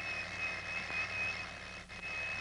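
Mechanical alarm clock ringing with a steady, high, slightly wavering tone over a low background hum.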